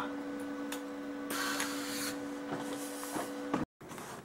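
Electric welder tacking a small steel tab inside a car door: a steady hum from the welder with clicks and two stretches of crackling arc noise, sputtering because of a bad ground. It cuts off abruptly near the end.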